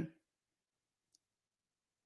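Near silence in a pause in a man's speech: the end of a spoken word at the very start, then one faint, short click about a second in.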